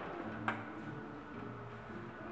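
A single sharp click about half a second in as the truck's hinged engine-hood side panel is unlatched and lifted, over a faint low background hum.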